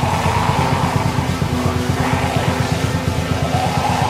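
Black metal song playing loud and steady, with a fast, dense beat pulsing low down under sustained distorted tones.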